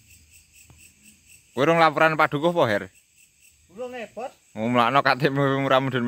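Crickets chirping steadily in a fast, even pulse, with a man's talking louder over it from about a second and a half in.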